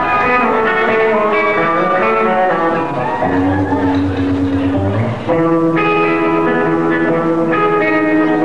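Electric guitar played live, ringing chords that open the song; the chord changes to a louder one about five seconds in.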